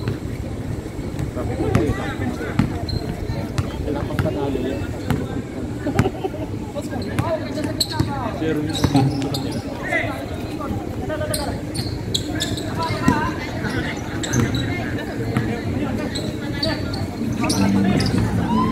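Basketball bouncing on a hard court as it is dribbled and played, in irregular thumps, over players' and onlookers' voices.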